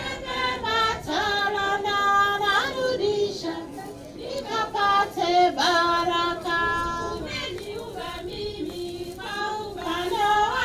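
High voices singing a slow song together, with several long held notes.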